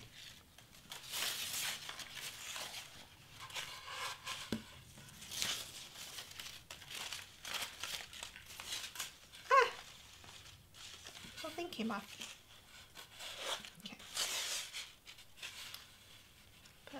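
Crepe-paper streamer rustling and crinkling in bursts as it is pulled and wrapped around a foam wreath form. A short wavy squeak about halfway through is the loudest moment, followed a couple of seconds later by a low murmur.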